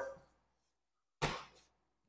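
Mostly near silence, with one brief soft noise a little over a second in.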